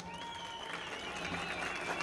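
Faint applause from an audience, an even patter of clapping, with a thin high steady tone over it.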